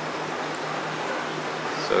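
Steady rush of circulating water in a running reef aquarium, with a faint low hum underneath.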